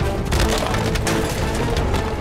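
A crash with splintering, clattering noise, hitting about a third of a second in and again at about a second, over the film's background music.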